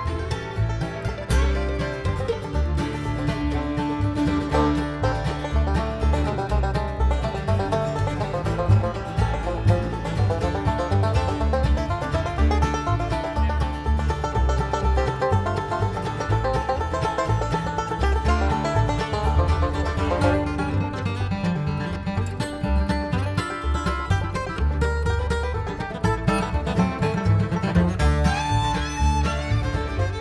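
Live bluegrass band playing an instrumental passage with no singing: banjo, acoustic guitar, fiddle, mandolin and upright bass together, the bass steady underneath.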